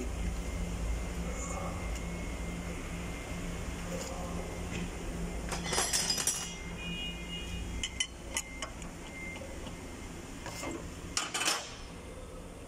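Metal hand tools and engine parts clinking as they are handled. There is a cluster of clinks with a brief metallic ring about six seconds in, and a few single clicks later, over a steady low hum.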